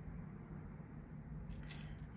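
Quiet room tone with faint handling of jewelry pliers on a metal jump ring and chain, and a brief soft rustle near the end.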